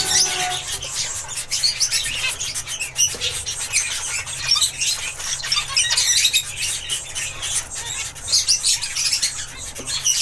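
Zebra finches chirping: a busy, continuous run of short, high calls.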